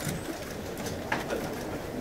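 Low, indistinct murmur of many people talking in a room, with a few faint clicks and rustles.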